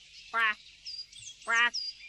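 A voice-acted cartoon animal calling 'gua' twice, about a second apart, each a short voiced quack-like call. Faint high chirping sound effects play between the calls.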